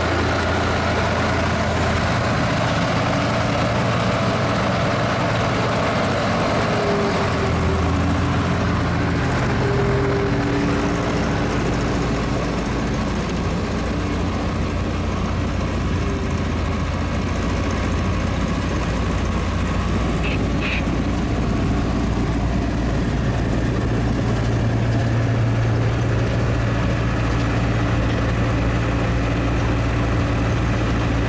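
Heavy farm machinery running steadily: a Case 435 skid steer's diesel engine and a belt conveyor loading silage into a trailer, a constant low engine drone.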